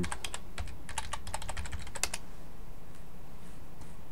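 Typing on a computer keyboard, entering a password: a quick run of keystrokes for about two seconds, ending with one louder key press, then only a low steady hum.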